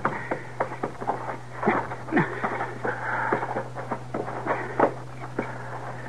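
Radio-drama sound effects of men clambering up rocks: irregular scuffs, scrapes and small knocks of boots on stone, over a steady low hum from the old recording.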